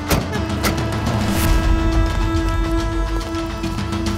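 Dramatic background music: sustained held notes over a low rumble, with a sharp percussive hit at the very start and lighter hits in the first second and a half.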